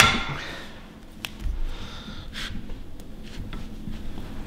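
Hand-tightened portable bench vise pressing the needle bearing out of an LS/LT rocker arm: a sharp metal click at the start that rings briefly, then a few lighter clicks and a short scrape as the vise screw is turned.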